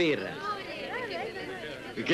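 Background chatter of several voices, with one voice trailing off at the start.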